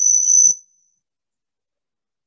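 A steady, high-pitched whine, with faint traces of a voice, cuts off suddenly about half a second in, followed by dead silence.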